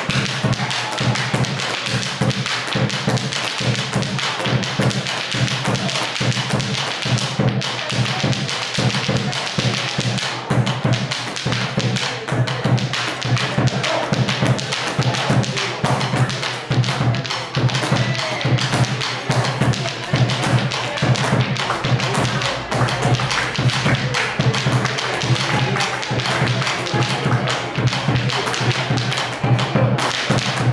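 A dancer's rapid, continuous foot-stamping and heel-and-toe tapping (zapateo) on the floor, with the steady beat of a bombo legüero drum.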